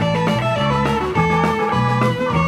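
Live rock band playing an instrumental jam: an electric guitar plays a lead line of sustained, bending notes over a walking bass and the rest of the band.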